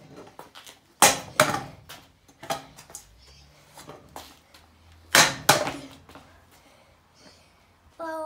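Ryan Williams stunt scooter's deck and wheels clacking onto concrete during floor double whip attempts, as the deck is kicked around the bars. There are sharp knocks: a pair about a second in, another a second later, and a second pair about five seconds in.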